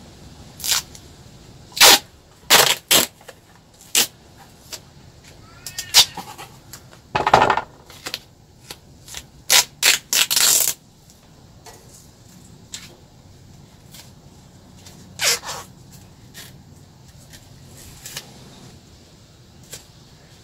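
Adhesive tape being pulled off the roll and torn into strips to bind a prop's handle: a series of short, sharp ripping sounds, the longest lasting about a second near the middle.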